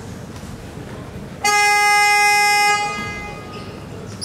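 Basketball scoreboard buzzer sounding once, a loud, steady horn lasting just over a second, over the hum of the gymnasium.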